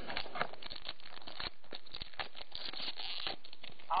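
Pokémon trading cards and a foil booster-pack wrapper being handled by hand: a continuous run of small crinkles, rustles and clicks.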